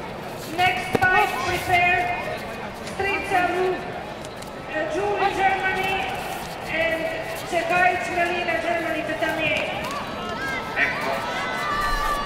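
Raised voices shouting and calling, echoing in a large sports hall, with a few sharp knocks.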